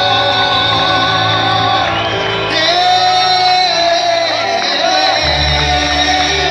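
Live praise music: an electronic keyboard playing with a voice singing along, and a heavy bass line coming in about five seconds in.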